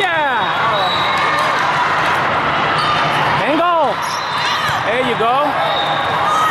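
Indoor volleyball rally in a large hall: the ball being played and shoes squeaking on the court, with a few short gliding squeals or calls, the strongest a little past halfway, over a steady din of the hall.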